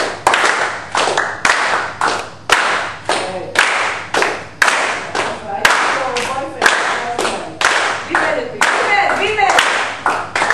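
Flamenco palmas: a group clapping hands in a steady rhythm, about two claps a second, with faint voices under the claps.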